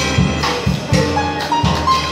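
Small jazz band playing: upright bass and drums keep a steady beat, with a stepping melodic line over them.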